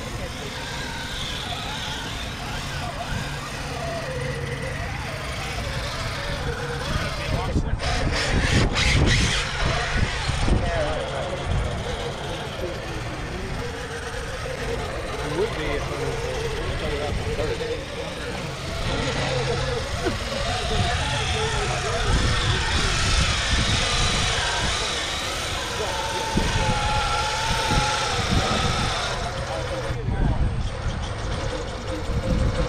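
Several people talking in the background outdoors, over a steady low rumble.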